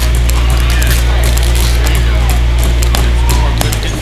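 Claw hammers tapping nails into small wooden pieces, many irregular light taps from several children hammering at once. Under them is a loud, steady low drone that drops away about three and a half seconds in, with children's voices in the background.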